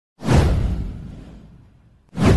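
A whoosh sound effect in a video intro: one sudden swoosh with a deep rumble under it, starting loud and fading away over about a second and a half.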